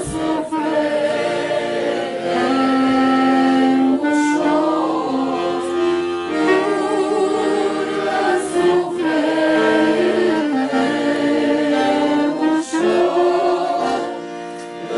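A small group of voices singing a song in long held notes, accompanied by accordion and clarinet, with short breaks between phrases.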